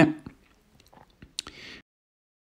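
A few faint clicks and one sharper metallic click from a socket and ratchet tightening a plastic oil filter housing cap to a light 25 Nm. The sound cuts to dead silence near the end.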